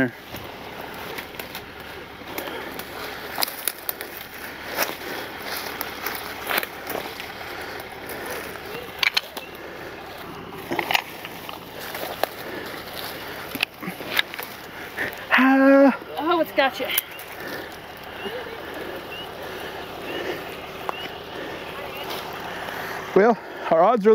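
Footsteps crunching through brush and loose rock, with scattered clicks and knocks. A voice is heard briefly about two-thirds of the way in.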